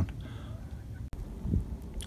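Low rumble of wind on the microphone outdoors, with a sudden momentary dropout about halfway through.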